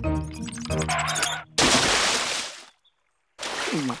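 Cartoon music cut off about a second and a half in by a loud splash of a heavy body landing in a pond, fading out within about a second. After a brief silence comes a short falling voice sound near the end.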